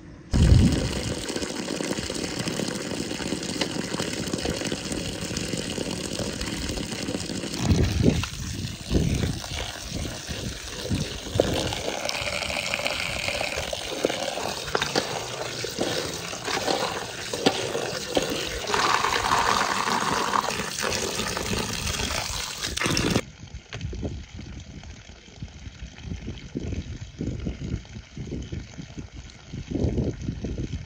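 A stream of running water splashing onto wild strawberries in a metal colander as hands stir and rinse them: a steady rush of water. About 23 s in it drops to a quieter, uneven splashing and trickling.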